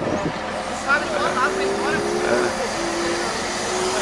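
Engine of a wheel loader running close by, with a steady whine that begins about a second in.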